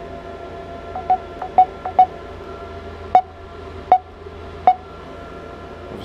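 Short electronic beeps from a Samsung Galaxy S6 as its volume is stepped up: about nine quick single-pitch blips, irregularly spaced, several in a fast cluster in the first two seconds and then a few more spread out, over a steady background hum.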